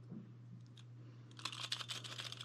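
Faint, quick plastic clicks and rustling from about a second and a half in, as a Humira auto-injector pen and its plastic caps are handled and pulled apart, over a steady faint low hum.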